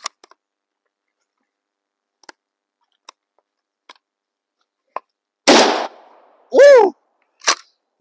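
A single blast from a Winchester SXP pump-action shotgun firing 3-inch buckshot, about five and a half seconds in, after a few light handling clicks. A loud shout follows right after the shot, and a sharp click comes near the end.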